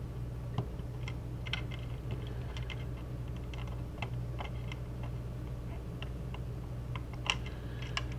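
Light, scattered plastic clicks and taps of fingers working cable connectors loose from a computer motherboard, with one sharper click near the end, over a steady low hum.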